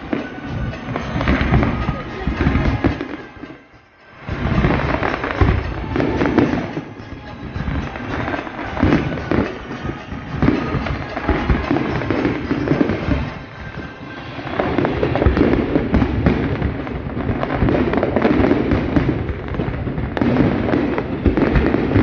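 A large fireworks display: aerial shells bursting one after another in a dense, irregular barrage. It dips briefly about four seconds in and grows louder and denser in the second half.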